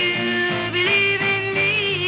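Female soul singer singing long, wavering notes over a soul band backing.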